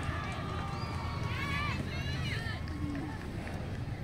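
Distant voices of young players and spectators calling out across a football pitch, with a cluster of high-pitched calls about a second and a half in, over a low steady rumble.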